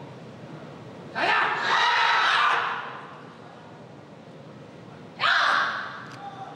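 Two loud, breathy human vocal bursts, a longer one about a second in and a short one near the end, against a low hall background.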